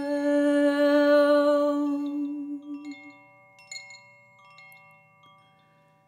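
A koshi chime rings softly with thin, steady bell tones under a long held sung note that fades out over the first three seconds. A few light chime strikes follow about halfway through, and the chime's ring then dies away almost to silence.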